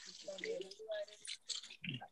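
Water from a garden hose running and splashing over an orchid's root ball as the roots are rinsed clean of old substrate by hand, fading near the end.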